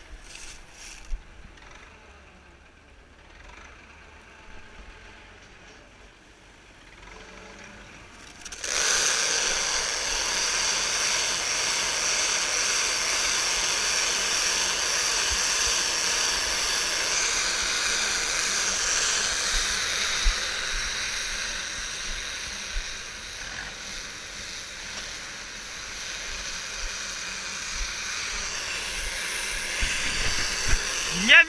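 Tractor-driven bale wrapper running, turning a round hay bale as it wraps it in stretch film. Quiet and low at first, then about nine seconds in a loud, steady hiss with high tones sets in suddenly and runs on, easing a little in the later part.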